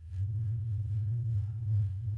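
A low, steady bass hum that holds one deep pitch without change.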